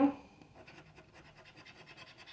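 A scratch-off lottery card being scratched off: a faint, quick run of rasping scrapes on the card's coating.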